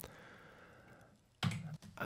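Quiet pause in speech: a faint fading exhale, then a short, low murmur of a voice about one and a half seconds in.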